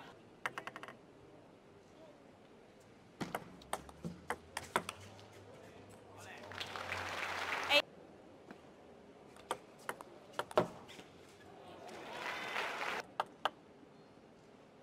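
Table tennis ball clicking sharply off bats and table in a short rally a few seconds in, followed by a burst of applause that stops abruptly. Later come a few more ball bounces and a second brief round of applause near the end.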